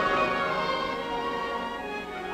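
Orchestral music with violins prominent, holding sustained notes, in a narrow-band recording with little above the upper treble.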